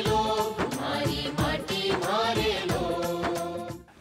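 Title theme music: a singing voice holding long, ornamented notes over rhythmic percussion, fading out near the end.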